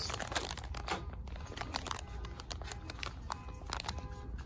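Clear plastic packaging crinkling and crackling in the hand, an irregular run of small crackles.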